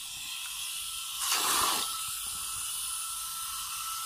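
Water running from a garden hose into a bucket of soapy water, a steady hiss with a louder surge about a second in.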